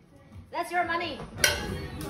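A metal spatula knocking against a plate, with one sharp clink a little past halfway, just after a brief voice sound.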